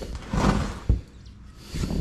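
A metal scraper scraping through dry sand-cement mix in a plastic basin, with a sharp knock about a second in.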